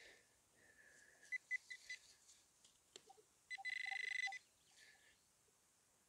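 A metal detector's electronic alert: a few short beeps about a second in, then a steady buzzing tone lasting under a second as it picks up the target in the dug soil.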